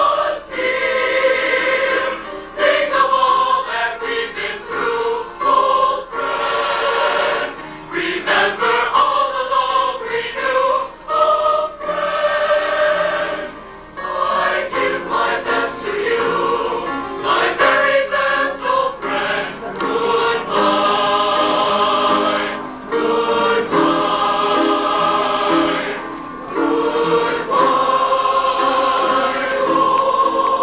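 Mixed high school choir of male and female voices singing in parts, holding chords in phrases with short breaths between them.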